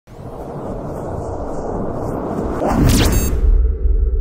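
Intro sound effects: a noisy whoosh swells up over about three seconds. It ends in a quick pitch sweep, and then a deep low boom keeps rumbling.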